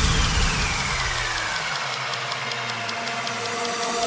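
Breakdown in an electronic dance track with the bass and beat cut out. A rushing noise sweep has a tone gliding down over the first second and a half, then faint even ticks while the noise swells again near the end.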